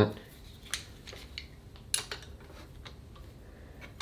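Scattered light metallic clicks and ticks of hand tools working the timing-belt tensioner of a Volvo B5254T engine as it is being set, the sharpest about two seconds in.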